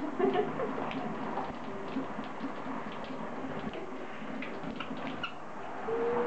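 Shower water running steadily, an even hiss, with faint short chirps or ticks scattered through it.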